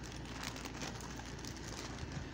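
Faint, steady crackling rustle made of many tiny ticks: handling noise from things being moved close to the microphone.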